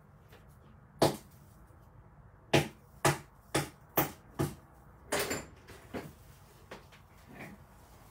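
A hammer tapping a staple down flat into hard wood: a series of about eight sharp taps, irregularly spaced and closest together around the middle, fading to lighter taps near the end.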